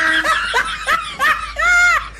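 A person laughing in a run of short pulses, ending in a longer drawn-out laugh.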